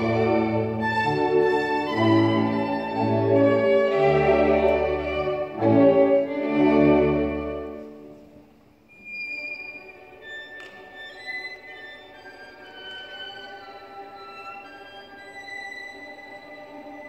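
Solo violin playing with a string orchestra: a loud passage with deep bass notes under it for about eight seconds, then the music falls away to quiet, high held notes for the rest.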